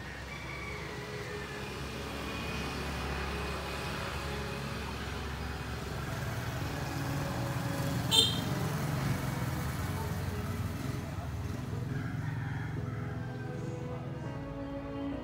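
Street traffic: motorbike engines passing along the street, a low rumble that builds toward the middle. A brief, sharp high chirp about eight seconds in.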